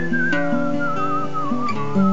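A person whistling a slow melody with a wobbling vibrato, drifting gradually down in pitch, over strummed acoustic guitar chords.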